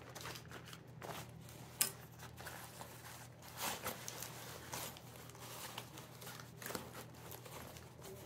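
Rustling and crinkling of a nylon fly-fishing vest being handled as a flat pouch is pushed into one of its zippered front pockets, with a sharp click a little under two seconds in.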